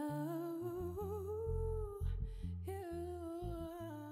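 A woman's voice holding two long wordless notes with a slight waver, over a bass guitar playing short low notes. The music is fading out.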